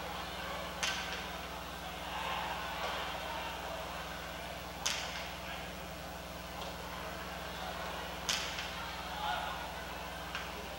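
Three sharp cracks of a jai-alai pelota in play during a rally, about four seconds apart, over a murmuring crowd and a steady electrical hum.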